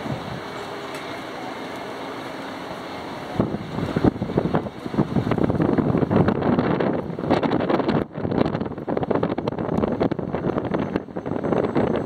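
Wind buffeting the microphone in loud, irregular gusts from a few seconds in, over a steady outdoor background.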